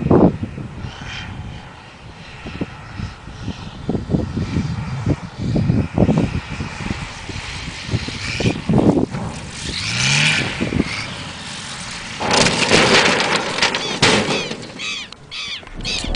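Small propeller plane flying low, heard through a handheld microphone thick with wind buffeting and handling thumps. About twelve seconds in, a sudden loud rush of noise rises as the plane comes down near the runway.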